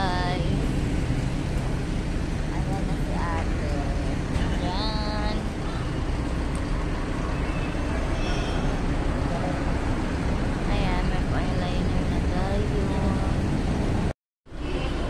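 Steady rumble of street traffic, with short snatches of voices now and then.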